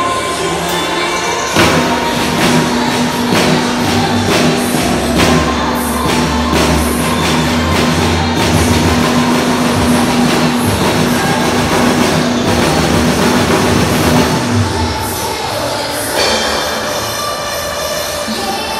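Acoustic drum kit played live along to a loud backing track, with regular drum and cymbal hits over a held low synth note; the music changes about fifteen seconds in.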